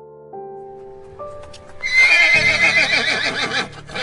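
Gentle piano notes, then about two seconds in a horse gives a loud, quavering whinny that lasts almost two seconds.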